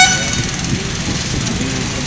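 A brief vehicle horn toot right at the start, over a steady hum of road traffic.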